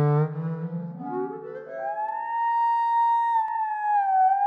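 Sampled clarinet long notes played from a home-made Kontakt instrument in portamento mode. A low held note breaks about a third of a second in into a quick rising run that settles on a high held note about two seconds in, and that note slides down in pitch near the end.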